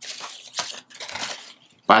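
Paper word cards rustling and clicking lightly as a hand rummages in a cloth hat to draw one, a few short rustles that die away shortly before speech resumes.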